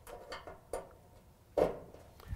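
A few faint clicks and taps of wire leads and spade connectors being handled at a dryer's thermal cutoff terminals, with one louder tap about one and a half seconds in.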